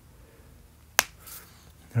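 A single sharp click about a second in, against quiet room tone.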